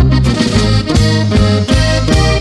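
Norteño music: accordion playing over a steady, alternating bass beat.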